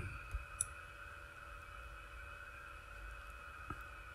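A few faint computer mouse clicks, two in quick succession shortly in and one near the end, over a faint steady hum.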